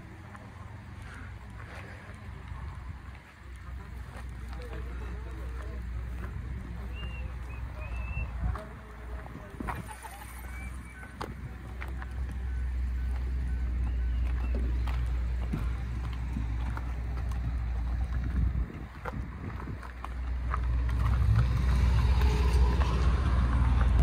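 Wind rumbling on the microphone of a handheld camera outdoors, growing louder toward the end, with faint voices in the background.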